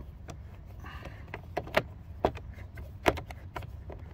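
Screwdriver backing a Phillips screw out of a car door trim panel: a string of irregular sharp clicks as the tool turns in the screw head.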